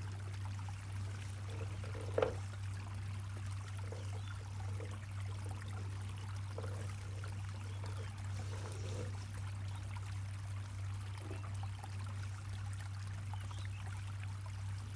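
Faint taps and knocks of celery stalks being laid and moved on a wooden cutting board, the clearest about two seconds in, over a steady low hum.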